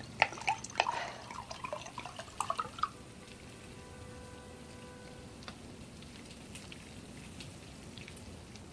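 A quick run of small sharp clicks and drips, like liquid and glassware being handled in a kitchen, in the first three seconds. After that comes a low, steady room tone.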